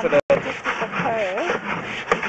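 A man talking over a steady rubbing, scraping noise, with a brief total cut-out of the sound just after the start.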